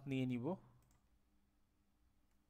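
A man's voice finishing a word, then a faint computer mouse click as a right-click menu is dismissed, over a faint steady low hum.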